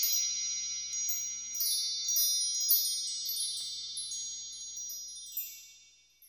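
An intro sting of high, bell-like chime tones: scattered tinkling notes over a sustained ringing chord that fades out near the end.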